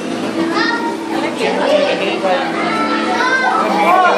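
A crowd of children's voices talking and calling out over one another, with no single voice standing out.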